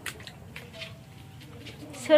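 Faint low bird cooing, typical of pigeons in a coop, with soft scattered rustling clicks.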